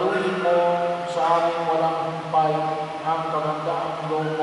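A voice chanting in long held notes, moving to a new pitch every half second to a second: liturgical chant during the Mass.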